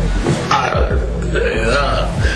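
A very drunk man lying passed out on the floor makes guttural, belch-like groans with his mouth open, in a few short bursts.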